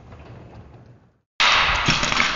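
A manually lifted sectional garage door rolling faintly up its tracks, then after a brief silence a sudden loud crash that fades away over a second or so, with a thud about half a second after it.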